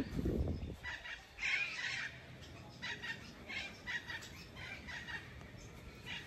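Birds calling in a scatter of short calls, loudest about a second and a half in.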